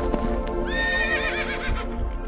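A horse whinnies once, starting about half a second in and lasting about a second: a high call that holds and then breaks into a quaver. Hoofbeats sound at the start, and music plays underneath.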